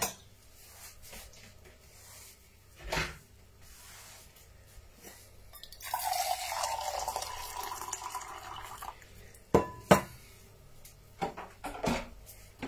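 Water poured from a stainless-steel jug into a stainless-steel pot, a steady splashing pour lasting about three seconds from the middle of the stretch. Metal pots clink a few times, once before the pour and twice shortly after it.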